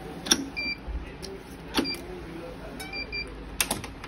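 Electronic badminton racket stringing machine at work: sharp clicks from the clamps and string gripper, about four of them, with a few short high beeps from the machine, one early and a quick run of three past halfway.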